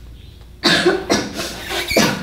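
A person coughing hard several times in quick succession, followed by a sharp knock at the very end.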